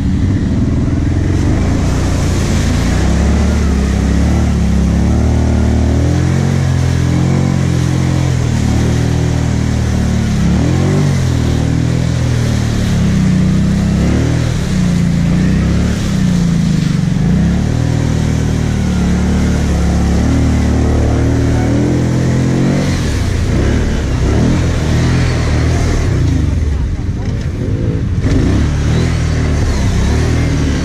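ATV engine, heard close up from a camera on the quad, running under load with its note rising and falling as the throttle is worked while it drives through muddy water, with water and mud splashing.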